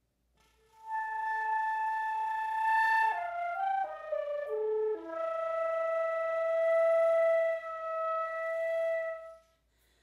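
Solo concert flute playing a short phrase: a long held high note, a quick run of short notes stepping downward, then a long lower note held and released shortly before the end.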